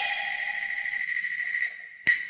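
Cantonese opera music: a held high note from the accompaniment carries on after a sung phrase and fades away, with a lower note dropping out about a second in.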